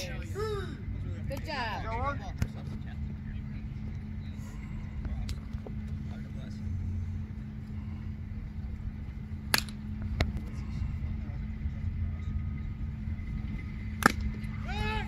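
A pitched baseball popping once, sharply, into the catcher's mitt about nine and a half seconds in, over faint distant voices and a steady low hum. Another sharp crack comes right at the end as the batter swings.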